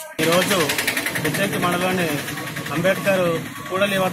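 A man speaking Telugu into microphones, over a small engine idling close by with a rapid, steady putter.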